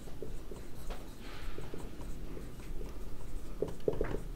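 Marker pen writing on a whiteboard: faint scratchy strokes and small taps as letters are written, with one longer stroke about a second and a half in.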